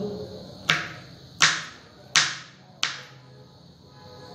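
Kitchen knife chopping vegetables on a wooden cutting board: four sharp chops, about one every 0.7 seconds.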